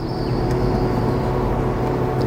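Claas Jaguar 960 Terra Trac forage harvester running steadily under load while picking up and chopping grass, heard from inside its cab. A faint high whine sits over the drone for the first second or so.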